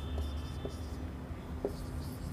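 Marker pen writing on a whiteboard: faint strokes with a few light ticks, over a low steady hum.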